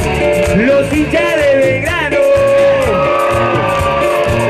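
Live cuarteto band music, loud and with a steady beat, from singer, congas and keyboards on stage. A long held note sounds in the middle.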